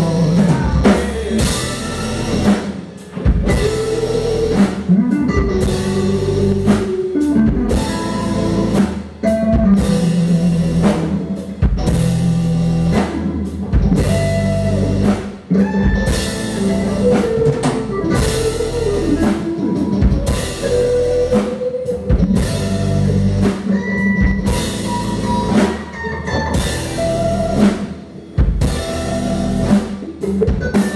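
Live rock band playing an instrumental passage: electric guitars and bass over a steadily hit drum kit, with lead lines that bend in pitch.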